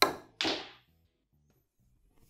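Snooker shot: a sharp knock as the cue strikes the cue ball, then a second knock about half a second later as the balls collide and the yellow is potted.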